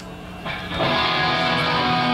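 Live band's electric guitar coming in about half a second in with a chord that is held and left ringing.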